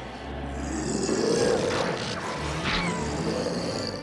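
Monster roar sound effect for a giant teddy bear turned beast: one long roar that builds to its loudest about a second and a half in, then eases.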